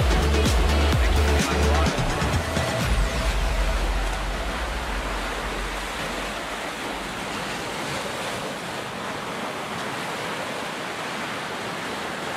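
Music with a heavy bass beat fades out over the first few seconds. It leaves a steady wash of ocean surf breaking on a beach.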